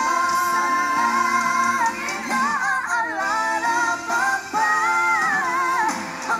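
Live pop ballad duet vocals with band accompaniment: a long held high note, then winding vocal runs, then another held note near the end.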